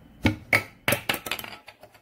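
Hard plastic cup lids knocking: two sharp knocks as the small lid is pressed down onto the big lid, then a quick rattling run of clicks that dies away within about a second. The rattle is the small lid being pushed off by the air trapped inside and clattering down.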